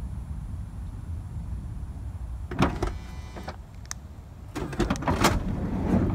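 Power sliding door of a 2006 Honda Odyssey with its motor straining in a low hum as it pulls the shut door in too far, then clunking and whirring as the mechanism releases, with more clicks and clunks near the end. This is the fault the owner puts down to the latch assembly inside the door needing to be removed and lubricated.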